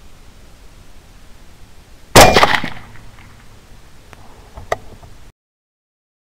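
A single suppressed rifle shot from a 6.5 Grendel AR-style carbine about two seconds in, with a short ring-off. It is followed by a couple of faint clicks, then the sound cuts off suddenly.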